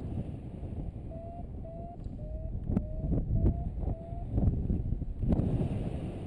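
Paragliding variometer beeping: six short beeps about two a second, each rising slightly in pitch, the tone that signals the glider is climbing in lift. Wind buffets the microphone throughout.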